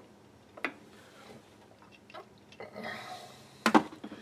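A few light clicks and a sharper knock near the end as tools and a can of cutting fluid are handled at a metal lathe that is not running.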